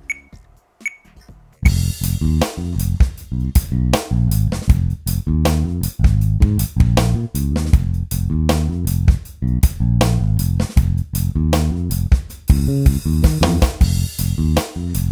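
Roland FA-06 workstation: a few metronome count-in clicks, then about a second and a half in a drum rhythm pattern and a bass line start and keep playing as a steady groove.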